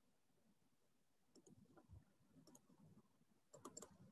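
Near silence broken by faint clicking at a computer: a couple of clicks about a second in, another pair around the middle, and a louder cluster near the end.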